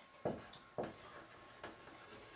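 Marker writing on a whiteboard: a handful of short, faint pen strokes.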